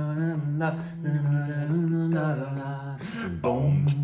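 A man singing alone without accompaniment in a low voice, holding long notes that slide between pitches, with brief breaks about half a second in and near the end.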